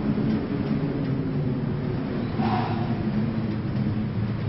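A steady low rumble, with a short hissing swell about two and a half seconds in.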